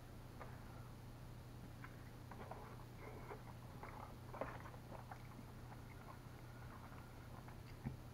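Faint chewing and mouth smacking while eating chicken wings, with scattered small wet clicks, one slightly louder about four and a half seconds in and another near the end.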